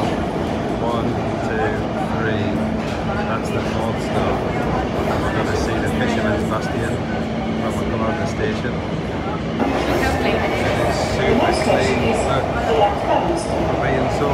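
Budapest metro train running, with a steady low rumble and an even hum. About two-thirds of the way through the noise grows louder and brighter. People's voices are heard over it.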